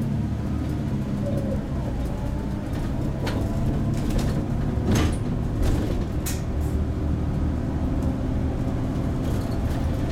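MAN Lion's City CNG city bus's natural-gas engine running as the bus pulls up a ramp, heard from inside the cab. A few sharp clicks come through in the middle.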